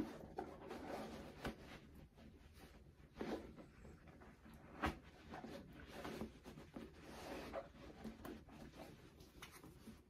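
Faint handling noise of a sneaker being turned over in the hands: soft rubbing and rustling of the shoe and a nylon jacket, with a few brief bumps.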